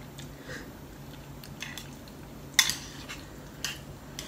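Close-up eating sounds of someone chewing noodles, with a sharp click of chopsticks against a ceramic bowl about two and a half seconds in and a smaller one near the end, over a steady low hum.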